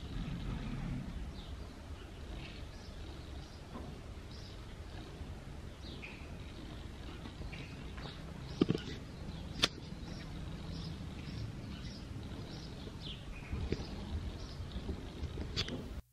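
Steady low background rumble with small birds chirping faintly on and off, and two sharp knocks about a second apart around the middle.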